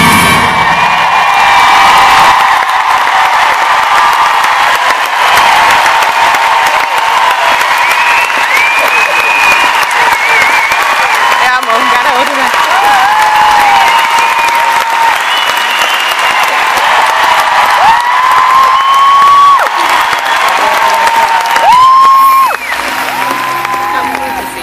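Large arena audience applauding and cheering, with many high cries and whoops rising over dense clapping. The noise dies down near the end.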